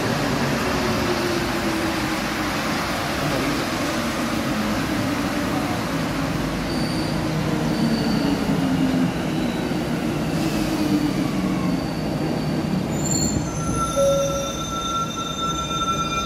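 Santiago Metro trains in a station: steady rumble of steel wheels on rail, with a whine that falls slowly in pitch as a train slows. Near the end, several high steady squeals come in as the train brakes to a stop at the platform.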